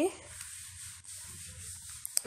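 Room tone: a faint steady hiss over a low rumble, the background noise of the voice recording, with the tail of a spoken word at the very start.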